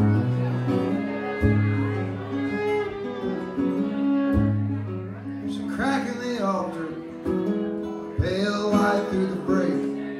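Acoustic guitar and fiddle playing a song's instrumental opening. A low guitar bass note sounds about every second and a half, with fiddle lines held and sliding over it.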